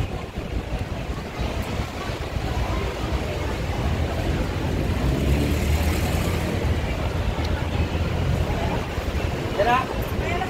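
Low, uneven rumble of outdoor traffic noise, with a few soft words from a voice near the end.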